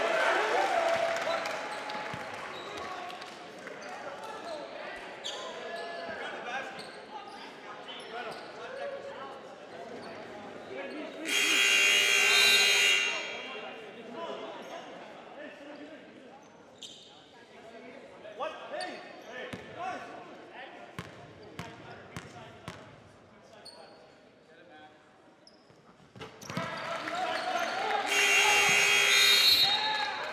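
Gymnasium sound during a stop in a basketball game: scattered voices and a basketball bouncing on the hardwood floor, echoing in the hall. Twice, about a third of the way in and again near the end, a loud burst of sound lasts about two seconds.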